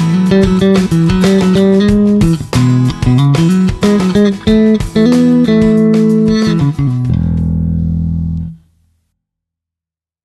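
Electric bass guitar, a Jazz Bass-style instrument, played in quick melodic lines of plucked notes. A little after seven seconds it lands on a held low note that rings for about a second and a half, then the sound dies away to silence.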